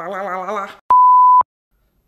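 A woman's voice holds a wavering, drawn-out note. Just under a second in it stops and is followed by a loud, steady, high beep about half a second long that starts and cuts off sharply, the kind of censor bleep an editor lays over a word.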